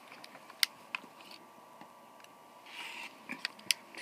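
A few sharp clicks and taps of a clear plastic quilting ruler being set down and pressed onto a cutting mat over fabric, with a short scraping rustle about three quarters of the way through.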